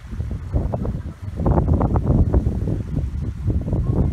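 Wind buffeting the microphone: an uneven low rumble with crackles that gets louder about a second in.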